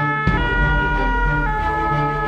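Two-tone emergency siren over soundtrack music, its pitch switching between tones about once a second.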